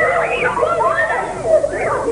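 Many young girls' voices at once, high and overlapping, calling out and laughing as they play a running game together.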